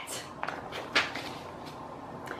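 A picture book's page being turned by hand, with a faint paper rustle or tap about half a second in and a louder one about a second in.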